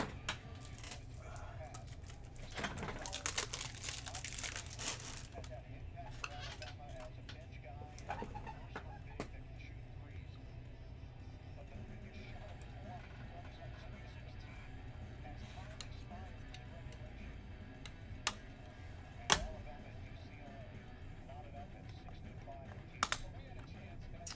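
Quiet handling of plastic magnetic one-touch card holders: a rustle a few seconds in, then a few sharp clicks, the loudest about 19 seconds in.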